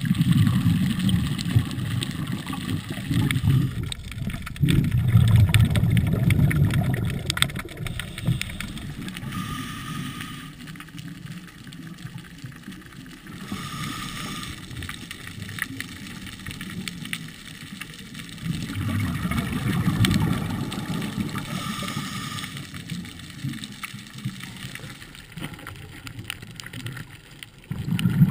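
Underwater ambience picked up by an action camera in its housing: low, muffled water rumbling and gurgling that swells in surges of a few seconds, with scattered sharp clicks. The background changes abruptly a few times.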